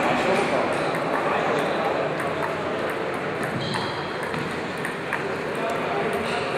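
Table tennis rally: a celluloid ball clicking off rubber paddles and the table top in irregular sharp ticks, with voices murmuring in the background.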